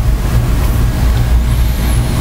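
A steady low rumble with a hiss over it, loud and unbroken.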